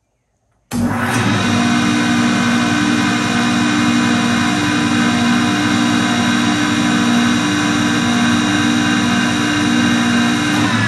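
A restored 1998 Grizzly 12-inch jointer with a newly fitted electric motor is switched on under a second in. It reaches full speed almost at once and runs steadily, motor and three-knife cutter head together, on its first test run after the rewiring.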